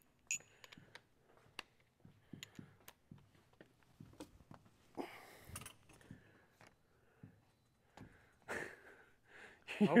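Dry-erase marker squeaking and tapping against a whiteboard as words are written, in short faint strokes with a longer stroke about halfway through.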